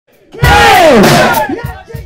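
A loud, distorted shout from a hard-rock singer into the microphone, falling in pitch over about a second, over low drum thumps; the recording overloads.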